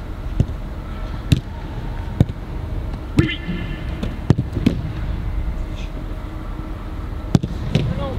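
Footballs kicked hard and stopped by goalkeepers in a shooting drill: a string of sharp thuds at irregular intervals, the loudest about four seconds in and again about seven seconds in.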